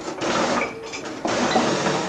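Rummaging through a kitchen drawer for a knife: utensils clattering and the drawer being moved, in two rattling stretches of under a second each.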